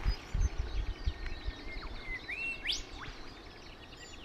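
Birds calling in bushland: a few whistled calls sweeping sharply up or down and one short steady whistle, over an even, fast run of high ticks. Low rumbling thumps are loudest in the first second and a half.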